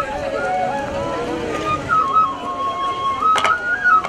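Kagura bamboo transverse flute playing a melody of held notes that step up and down, with a few sharp drum strikes near the end.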